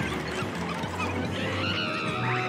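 A cartoon bear's high, wavering shriek of fright as frogs leap into the boat. It starts about halfway through and lasts about a second, over background music.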